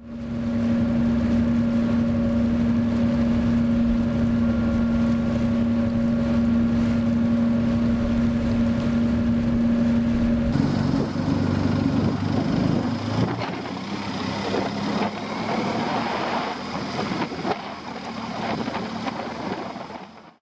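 Small car ferry under way: a steady engine hum with water rushing along the hull and wind on the microphone. About ten seconds in, the steady hum suddenly drops back and rougher, gusting wind and water noise takes over.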